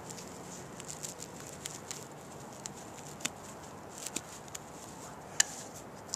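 Fingers rummaging through grass and loose soil in a small dug hole, searching for more coins, making soft rustling with scattered small crackles and clicks. One sharper click comes a little after five seconds in.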